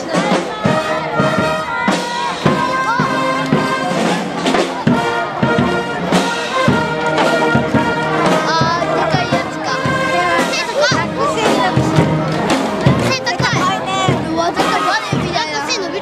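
Marching brass band playing a tune with trumpets, trombones and sousaphones over a steady beat.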